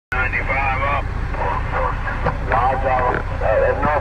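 A man's voice talking over a Cobra 29 LTD CB radio's speaker, in CB-channel chatter, with a steady low hum underneath.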